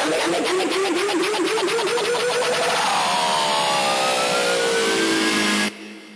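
Pitched electronic sweep effect in a hardstyle mix. It starts as a wobbling tone, then about halfway through several tones glide down in pitch while one rises. It cuts off abruptly near the end.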